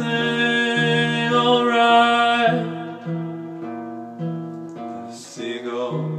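A song played on acoustic guitar. A sung note is held over the guitar for the first couple of seconds, then the guitar carries on alone, more quietly.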